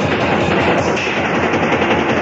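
Fast, loud punk rock with distorted electric guitars over quick, driving drums.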